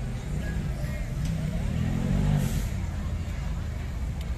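Street traffic: a passing motor vehicle's engine rumbles low and steady, swelling as it goes by in the middle.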